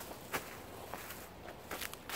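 Dry leaf litter and twigs crunching in a few short, sharp crackles, the loudest about a third of a second in.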